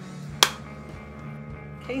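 A single sharp click of a light switch about half a second in, over steady background music.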